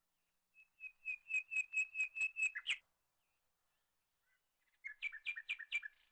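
A bird singing two phrases of quick, evenly repeated high chirps, the first about eight notes long, the second shorter, near the end.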